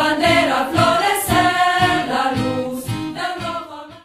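A choir singing a song over a steady beat of about two strikes a second; the music dies away near the end and cuts off.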